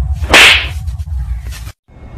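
A single sharp whip-crack swish about half a second in, the loudest thing here and about half a second long, over a low rumble that cuts out just before the end.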